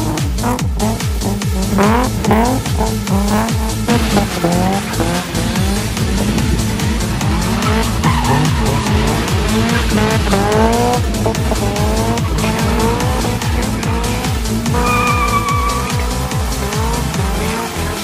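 Drift cars' engines revving hard in repeated rising bursts, with tyres squealing and skidding through drifting and a burnout. Background music with a steady beat runs underneath.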